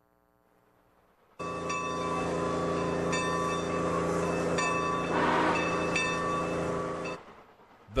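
Steam locomotive whistle sounding one long chord-like blast of about six seconds, starting about a second and a half in.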